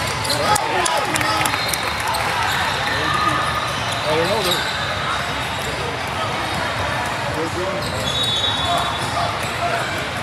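Basketball game in a large, echoing hall: the ball bouncing on the hardwood court among a steady din of voices from players and spectators, with a few short high squeaks.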